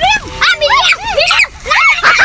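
Children squealing and laughing in a rapid string of short, high-pitched yelps.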